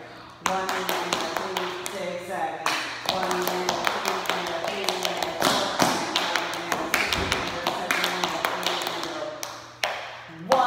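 Tap shoes striking a hard studio floor: two dancers tapping in quick, dense runs. The taps start about half a second in and stop shortly before the end.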